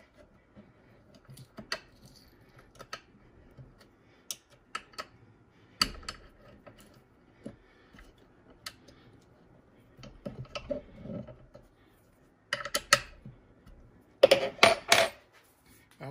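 Small metallic clicks and clinks of a hex key turning and seating cap head screws in a power-feed mounting bracket, the screws being snugged up only. A louder flurry of clinks near the end.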